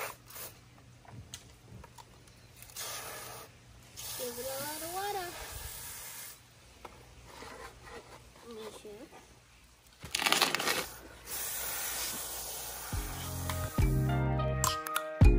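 Garden hose spray nozzle sprinkling water onto potting soil in several separate bursts, the longest and loudest near the end. Music starts just before the end.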